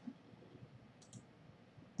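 Near silence, with one faint click about a second in, a computer mouse click.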